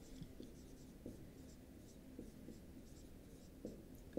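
Dry-erase marker writing a word on a whiteboard: a string of faint, short strokes of the felt tip rubbing across the board.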